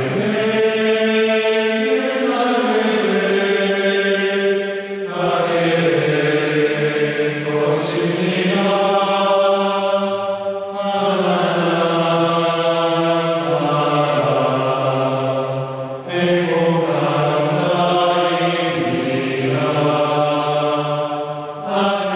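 Group of singers practising inside a church, singing long held notes that ring in the church's natural reverb. They sing in phrases of a few seconds with short pauses between them.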